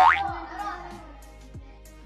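A comic sound effect right at the start: one quick sliding sweep rising sharply in pitch, over background music with a steady beat.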